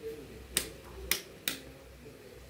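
Three sharp clicks, the first about half a second in and the others roughly half a second apart, over a faint low room hum.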